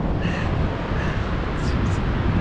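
Steady rushing background noise of wind and surf on a beach, with no clear tones or distinct events.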